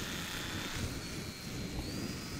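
Mini F4U Corsair RC warbird's small electric motor and propeller running at half throttle just after a hand launch: a thin high whine that rises slightly in pitch in the second half. Wind rumbles on the microphone.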